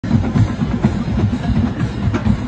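Marching band drumline playing, bass drums and snares beating a rapid run of strokes.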